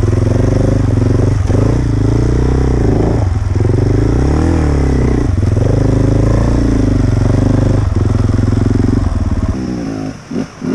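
Enduro motorcycle engine running under load on a climbing trail, its pitch rising and falling with the throttle and dipping briefly several times. Near the end the engine sound drops away.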